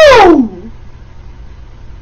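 A man's loud, drawn-out vocal exclamation falling sharply in pitch, over in about half a second. After it there is only a faint steady low hum of room noise.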